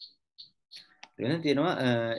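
Three or four soft, short clicks in a quiet room, then a man starts speaking a little over a second in.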